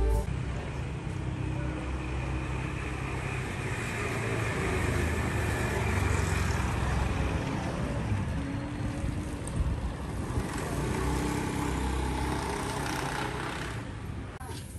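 Street traffic noise: the steady rumble of vehicle engines and tyres going by, swelling a little twice, with faint voices.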